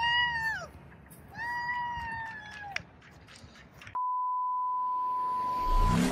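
A child's two high-pitched excited squeals, each about a second long, in the first three seconds. From about two-thirds of the way in, a steady electronic beep tone is held for about two seconds, followed by a rising whoosh near the end.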